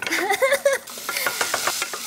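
Wooden spoon stirring and scraping food that sizzles in a hot saucepan on an electric hot plate, with many short clicks over a steady hiss. A short laugh sounds in the first part.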